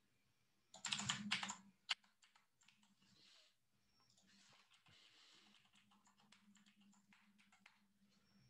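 Typing on a computer keyboard while editing code: a quick run of key clicks about a second in, then sparse, fainter keystrokes.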